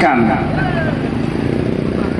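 A motor vehicle engine running steadily, its pitch sinking slightly, after a man's amplified voice finishes a word at the very start.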